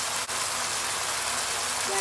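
Beef, capsicum and onion sizzling steadily in a hot frying pan over high heat, with a single brief click about a quarter second in.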